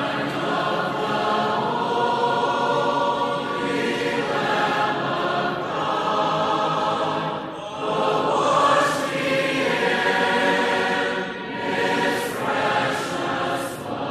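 A choir of mixed voices singing a cappella in harmony, holding long notes, with a few crisp 's' sounds of the words near the end.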